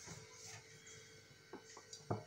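Near silence: faint room tone with a steady low hum and two small faint clicks near the end.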